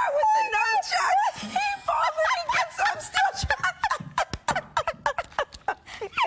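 Two women laughing uncontrollably in quick, breathless bursts, the laughter high-pitched and wavering up and down.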